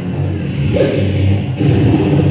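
Beatboxer's voice producing a continuous low, bass-heavy vocal rumble, with a short pitched vocal sound sliding about a second in.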